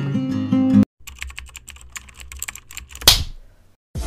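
Acoustic guitar background music stops abruptly just under a second in. A rapid run of keyboard-typing clicks follows for about two seconds, then one short whoosh: the sound effects of an animated title card.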